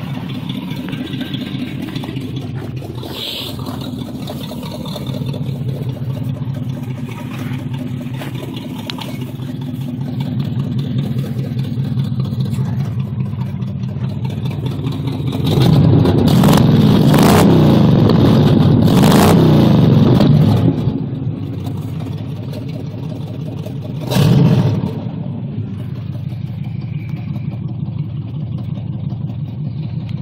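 Chevrolet 350 small-block V8 exhaust through glasspack mufflers welded straight to the header collectors, idling with a steady rumble. It is revved and held up for about five seconds about halfway through, then blipped once briefly. The owner says it is running a little rich.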